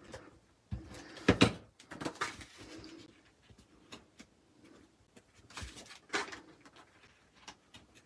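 Paper handling: a white cardstock panel is picked up, laid onto a card base and pressed down, with rustling and soft taps against the table. It comes in a few short bursts, the strongest about a second and a half in and again about six seconds in.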